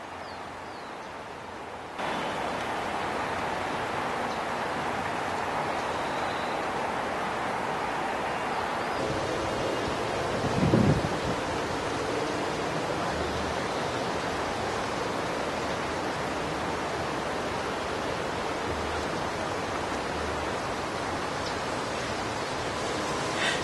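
Steady outdoor hiss of wind on a camcorder microphone, stepping up in level about two seconds in. Near the middle, one brief low thump is the loudest sound.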